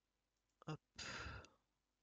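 A man's brief mouth sound, then a breathy exhale or sigh into a close microphone lasting about half a second, in an otherwise silent pause.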